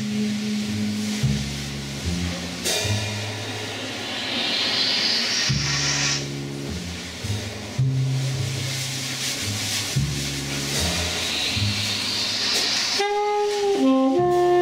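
Live free jazz: a double bass plays low stepping notes while the drummer swells the cymbals in repeated rising washes that cut off. Near the end, tenor saxophone and trumpet come in with held notes.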